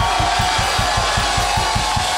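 Live band drums playing a fast, even beat of about seven bass-drum hits a second under a held note, stopping near the end.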